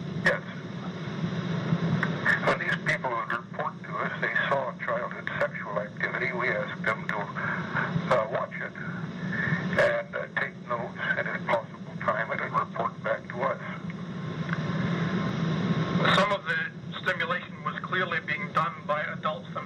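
Speech only: a recorded telephone conversation between two men, their voices thin over a steady line hiss.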